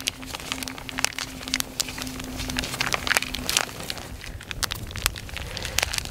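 Wood campfire crackling with irregular sharp pops, along with the crinkle of a plastic zip-top bag being squeezed by hand.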